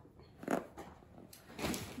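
Handling noise of a pillow and fabric being moved on a paper-covered table: two short rustling bursts about a second apart over a low background.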